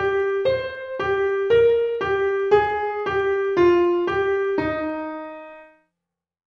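A piano-tone keyboard plays an E-flat major solfège exercise in even notes about two a second, alternating each scale degree with G (mi): la-mi-sol-mi, fa-mi-re-mi, then a lower E-flat (do) held and dying away about five seconds in.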